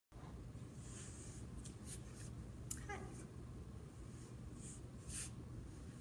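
Faint room hum with soft rustles of clothing as a person shifts and settles into a cross-legged seat, and one short pitched sound about halfway through.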